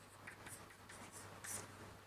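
Chalk on a blackboard: a handful of faint, short scratching strokes as a diagram is drawn, over a steady low hum.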